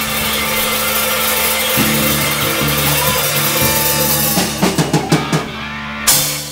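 Live rock band playing, with held bass and guitar notes under a wash of cymbals. Near the end the drummer plays a quick run of hard drum hits.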